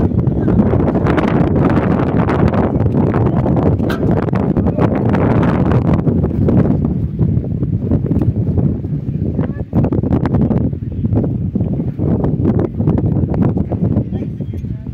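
Wind buffeting the microphone: a loud, continuous rumble with rapid gusty flutter, dropping briefly a little before the ten-second mark.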